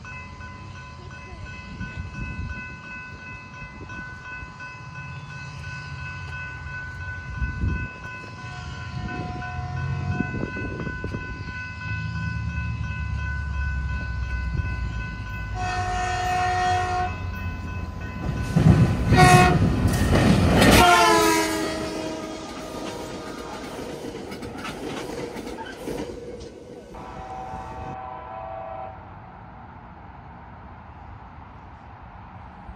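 A train approaches with a growing rumble and clatter, sounding its horn in short blasts about sixteen and nineteen seconds in, then a long blast whose pitch drops as it passes. Another horn sounds later, softer, and a steady ringing tone is heard over the first nine seconds.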